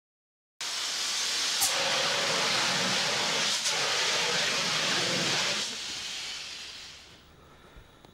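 A CO2 fire extinguisher discharging with a loud, steady hiss. It starts about half a second in and fades away over the last couple of seconds, with two short clicks partway through.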